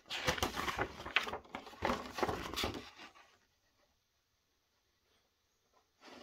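A folded paper leaflet rustling and crackling as it is handled and unfolded, for about the first three seconds.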